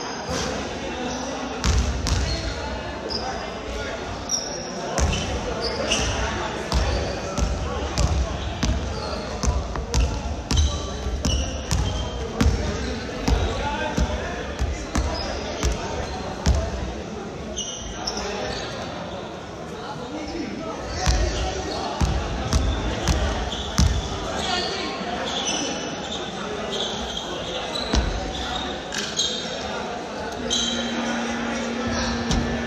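Basketballs bouncing on a hardwood gym floor, repeated irregular thuds about one or two a second, echoing in a large hall over the background chatter of players.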